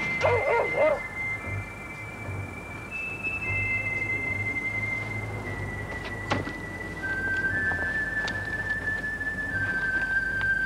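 Suspense background music from a TV drama: thin high sustained notes that step from one pitch to the next over a low pulse. A short wavering cry comes within the first second, and there are two sharp knocks later on.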